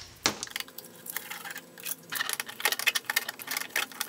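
A quick, irregular run of light metallic clicks and ticks: a flathead screwdriver working the screws of the worm-drive hose clamps on the intake pipe to loosen them.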